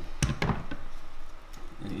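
Tile leveling system being tightened with leveling pliers: two sharp clicks about a quarter second apart, then a few fainter ticks, as the plastic wedge is forced through the leveling clip to pull the two tile edges flat.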